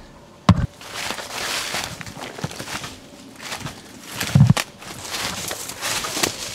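Footsteps crunching and rustling through dry fallen leaves, in uneven bursts, with two sharp thumps, one about half a second in and one about four and a half seconds in.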